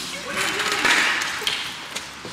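Men's raised voices during a physical scuffle, with rough handling noise on the camera microphone that is loudest about a second in.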